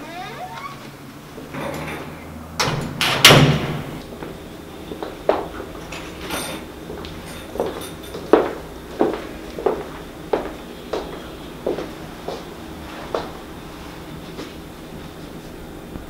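A door shutting with a loud thud about three seconds in, then about a dozen footsteps, roughly one every two-thirds of a second.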